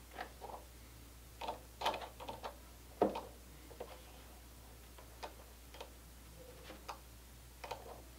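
Scattered light clicks and ticks of small plastic and metal parts handled by hand as a threaded pushrod is turned into plastic ProLink-style link ends, the loudest click about three seconds in. A faint low hum runs underneath.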